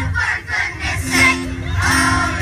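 Children's choir of many young voices singing together over musical accompaniment, with a brief drop in level about half a second in before a held note comes in.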